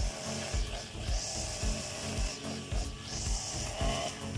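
Background music with a steady beat. Under it, a backpack brush cutter's line hisses through tall grass in three sweeps.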